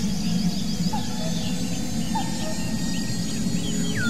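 Forest ambience: a few faint, scattered bird chirps over a steady low drone and hiss.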